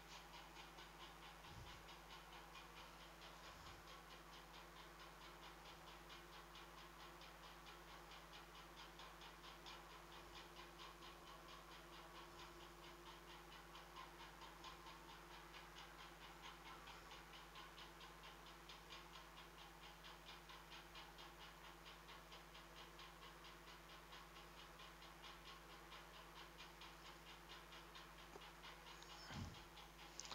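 Near silence: room tone with a faint steady low hum and a faint, even, rapid ticking.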